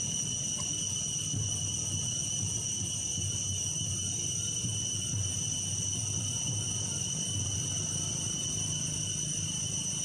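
Insects droning steadily at one high, unchanging pitch, with a low rumble beneath.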